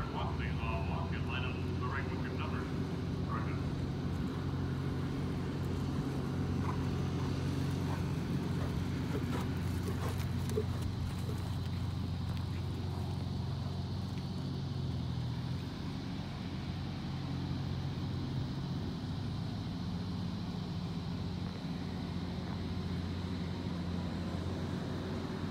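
A low, steady motor hum, like an idling engine, with a little change in its pitch past the middle. Faint voices come in near the start.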